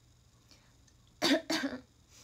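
Two short, loud, breathy bursts from a woman's voice, one right after the other, a little past halfway through: a brief laugh or cough-like exhalation.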